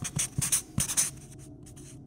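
Marker pen writing in quick, scratchy strokes, a rapid run of them loudest in the first second, then fainter ones.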